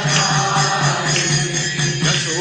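Devotional Hindu mantra chanting with musical accompaniment.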